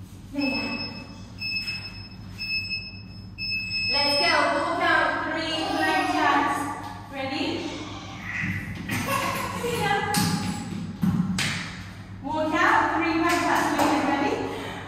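Digital interval timer beeping four times about a second apart, the last beep longer, the countdown that ends a timed interval. A voice follows, with a few thuds.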